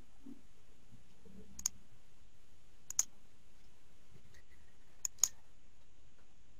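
Computer mouse button clicks, sharp and isolated: one about one and a half seconds in, one about three seconds in, then two quick clicks about five seconds in.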